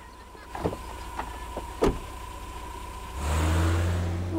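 Car sound effects in a cartoon: a few light knocks, then about three seconds in a car engine starts a loud low rumble as the car drives off.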